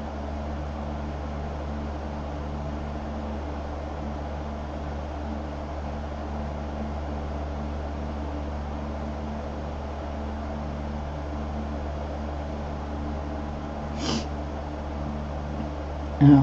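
Steady low electrical hum with an even background hiss, unchanging throughout, with no distinct handling sounds. A brief breathy hiss about two seconds before the end.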